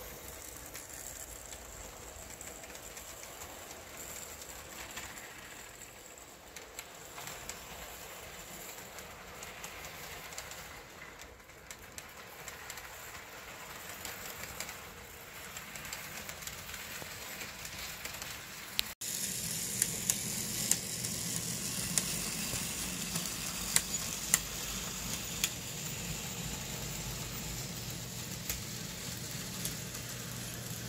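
Model train running on the layout's track: a faint steady hiss of wheels on rail with light clicks. About two-thirds of the way in it cuts to a louder stretch of a passing model freight, a steady low hum with many sharp clicks from the wheels.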